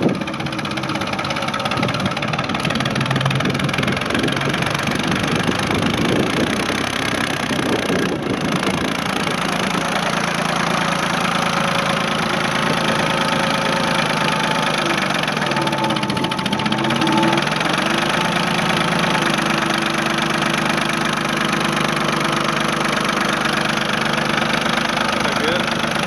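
Ford 445 loader tractor's three-cylinder diesel engine running steadily, its pitch dipping briefly and coming back up about fifteen seconds in.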